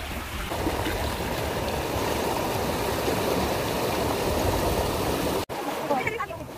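Small sea waves washing and gurgling among granite shore boulders, a steady rushing wash that grows a little louder about half a second in. It cuts off suddenly near the end.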